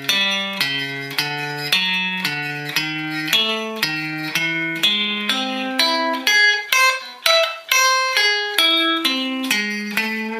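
Electric guitar playing a slow blues turnaround lick in A, one after another at about two to three a second: two-note thirds and tritones stepping along the turnaround, then an augmented arpeggio climbing up and coming back down, landing on a held note near the end.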